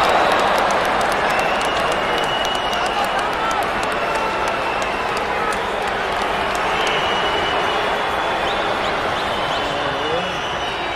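Players and spectators shouting indistinctly and clapping in celebration of a goal, loudest at the start and tailing off, over a steady outdoor hiss.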